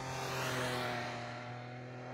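Motorcycle engine running at a steady pitch as the bike rides past, its sound swelling in the first second and then fading.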